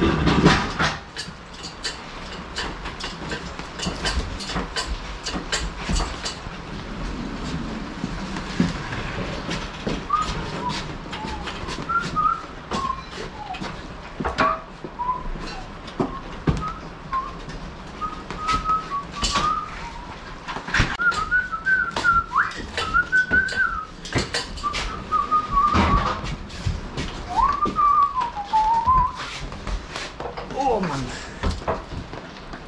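Hand pallet truck clattering and knocking on a trailer's floor and against pallets as loads are shifted, with sharp knocks throughout. From about a third of the way in a man whistles a wandering tune over the clatter, on and off until near the end.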